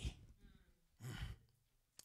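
A man's short breath into a handheld microphone about a second in, during a pause in his speaking; otherwise near silence.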